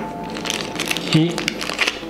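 Small clear plastic zip bag of screws crinkling and ticking in the hands as the screws are picked out of it, over background music holding a few steady notes.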